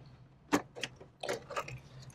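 Dell PowerEdge R730 riser 1 card cage being pulled up out of its motherboard slot: one sharp click about half a second in, then a few lighter clicks and rattles of plastic and metal as it comes free.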